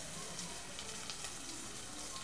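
Sliced onion frying in olive oil in a pot on a gas hob, a steady soft sizzle.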